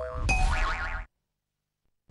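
Closing cartoon sound effect of a TV channel ident, a wavering, wobbling pitch over music, that cuts off abruptly about a second in, followed by dead silence.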